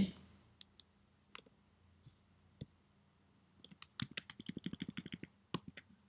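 Computer keyboard and mouse clicks: a few scattered clicks, then a quick run of keystrokes and clicks about four seconds in.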